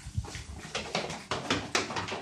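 A dog panting, rapid breathy puffs at about five a second.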